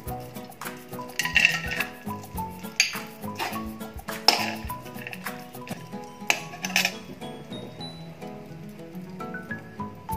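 A metal spatula clinking and scraping against a steel kadhai as chopped almonds and cashews are stirred in ghee, a handful of sharp clinks over the stirring. Background instrumental music plays underneath.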